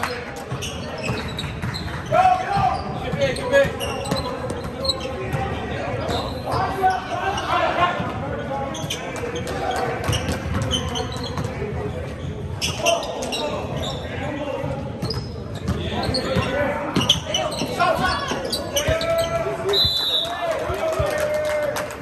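Basketball game sounds in a gym: a ball bouncing repeatedly on the hardwood court among many short sharp knocks, with players and spectators calling out, all echoing in the large hall.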